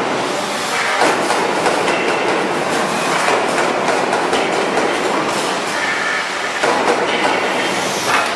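Hydraulic uncoiler running with a steel coil on its mandrel: a loud, steady metallic rattle and clatter.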